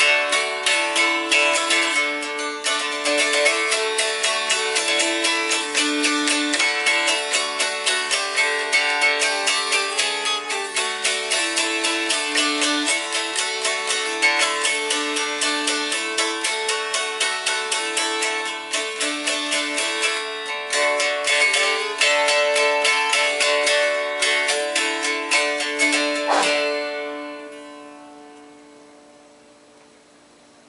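Mountain dulcimer strummed rapidly with a quill, the melody string stopped with a noter: a stepping tune over steady drone strings. Near the end the playing stops and the strings ring away.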